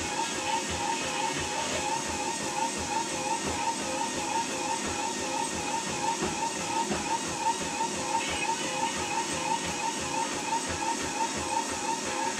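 Motorised treadmill running under a runner: a steady motor whine that wavers with each footstrike, over the soft, even beat of running footfalls on the belt, about three steps a second.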